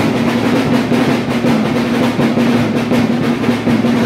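Rapid, continuous drumming, a dense drum roll that keeps up without a break, with a steady low tone sounding underneath.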